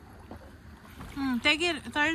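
Paddles dipping and splashing faintly in river water beside an inflatable raft, then a person's voice comes in a little over a second in.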